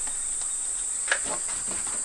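Insects chirring in a steady, unbroken high-pitched drone, with a couple of faint clicks.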